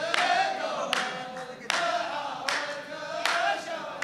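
Row of men chanting a poet's verse together in unison, the chorus of a Saudi muhawara poetry exchange, with sharp group hand claps in unison on a steady beat, a little faster than once a second.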